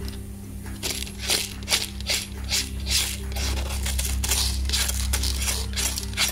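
Metal palette knife scraping rice grains off painted watercolour paper in a run of quick strokes, the grains clicking and skittering as they are pushed aside.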